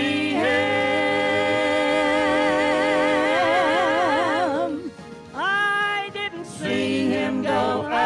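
A mixed vocal quartet of two men and two women singing a gospel song into microphones. Long held chords waver with vibrato as each phrase ends, there is a short break about five seconds in, and then a new phrase begins.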